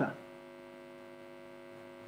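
Steady, faint electrical hum made of a stack of evenly spaced tones, carried on a video-call audio line. A man's last word trails off right at the start.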